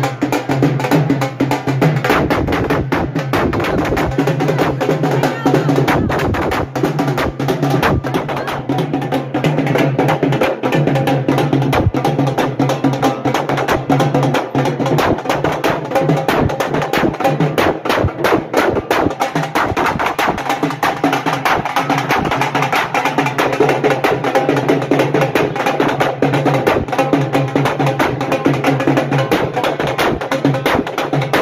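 Loud, fast, continuous drumming over music, the dense strokes running without a break.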